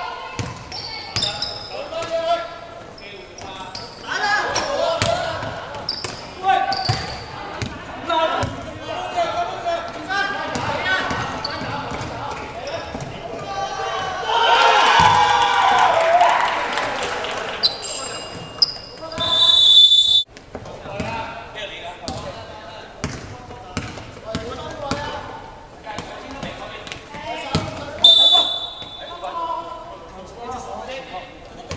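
Indoor basketball game in a large echoing hall: a basketball bouncing on the hardwood court, with players shouting to each other. There are a few short high-pitched tones about twenty seconds in and again near the end.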